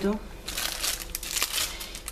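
Packaging being handled in the hands, a run of short irregular crinkles and crackles.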